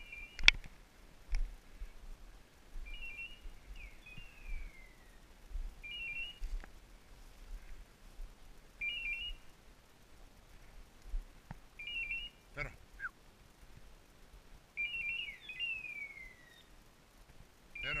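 A hunting dog's electronic beeper collar giving a short two-tone beep about every three seconds, with two falling whistle-like notes in between.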